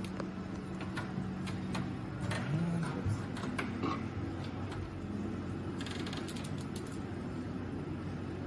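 Hands handling a mobility scooter's armrest and a load-test rig's metal fittings: scattered clicks and small knocks over a steady low hum, with a quick rattle of clicks about six seconds in.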